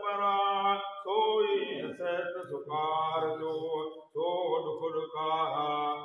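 Unaccompanied men's voices chanting a Sindhi devotional madah in long, held notes that slide in pitch. The voices pause briefly between phrases about one second and about four seconds in.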